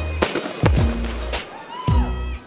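Aerial fireworks bursting overhead with a few sharp bangs, over music with a deep, falling bass.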